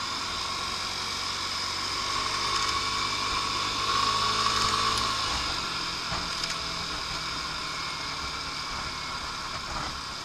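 Lance Havana Classic 125 scooter engine running while riding at road speed, under a steady rush of wind and road noise. It grows louder about four to five seconds in, then eases off.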